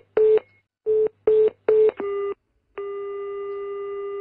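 Telephone line tones: several short, evenly spaced beeps of one pitch, like a busy signal, then after a brief pause a single steady tone held for about a second and a half. It is the sound of the call being cut off.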